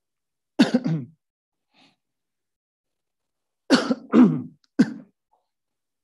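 A person coughing close to the microphone: a double cough about half a second in, then three more coughs in quick succession near the four-second mark.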